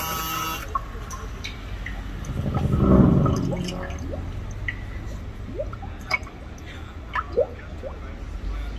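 Dripping and bubbling water sounds: short, scattered rising plinks, with a low swell that peaks about three seconds in and fades again.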